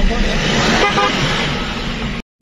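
Steady engine and road noise from inside a moving car's cabin, with a brief horn toot about a second in.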